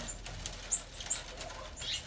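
A small bird chirping twice, about half a second apart: short, sharp, high-pitched notes. Behind them is faint rustling and clicking of cane reeds being pulled through a woven basket.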